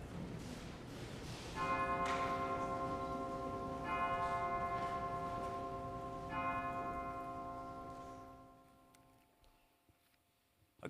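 The last of the organ music fades out, then a deep bell chime is struck three times, a little over two seconds apart, each stroke ringing on and dying away.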